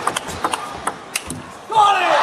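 Table tennis rally: a quick run of sharp clicks as the celluloid ball strikes the bats and the table. Near the end a loud shout cuts in, the loudest sound, as the crowd starts to cheer.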